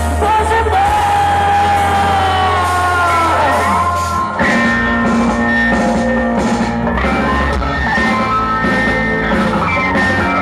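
Live heavy rock band playing loud, with distorted electric guitars, bass and drums. A long held high vocal note slides down about four seconds in, and the band then carries on with a steady riff.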